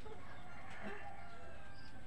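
A rooster crowing once, a single drawn-out call of about a second starting about half a second in.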